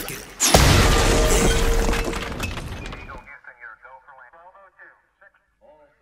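A sudden loud crashing, shattering noise about half a second in, dying away over about three seconds. Faint voices follow it.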